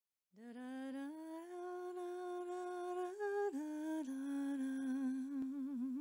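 A single unaccompanied voice humming a slow melody of a few long held notes, stepping up and then down in pitch, with vibrato on the last note.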